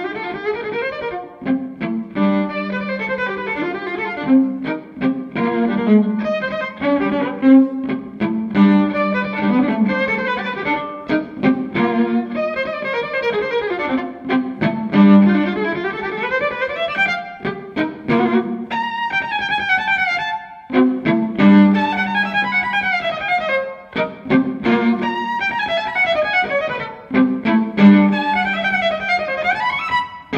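Unaccompanied violin played live, in busy phrases that keep coming back to a held low note near the bottom of the instrument's range. Sweeping runs go down and then back up the strings around the middle, and another rising run comes near the end.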